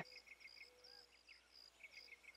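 Near silence with faint insect chirping: short high chirps, about four or five a second.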